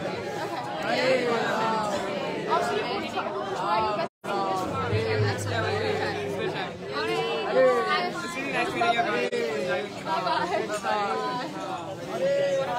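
Several people talking at once in overlapping chatter, with no music playing. The sound cuts out completely for a moment about four seconds in.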